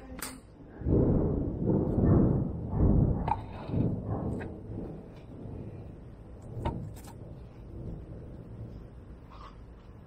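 Thunder rolling: a loud low rumble that begins about a second in, swells several times over about three seconds, then dies away.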